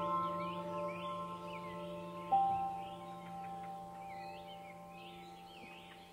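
Calm ambient background music: bell-like notes ring out and slowly fade, with one new note struck a little over two seconds in, over the chirping of birds.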